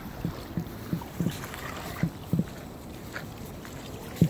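Steady wash of surf and wind with about six soft, short knocks in the first two and a half seconds.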